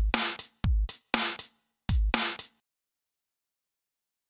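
A sampled drum-kit loop in an early-80s New York style plays from Reason: a big fat kick, a cracking snare and a really toppy hi-hat, all heavily compressed. It runs for a few hits and cuts off suddenly about two and a half seconds in.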